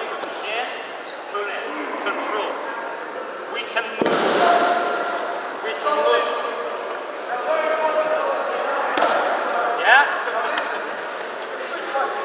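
Many voices chattering and echoing in a large sports hall, with a few sharp thumps, the clearest about four seconds in and again about nine seconds in.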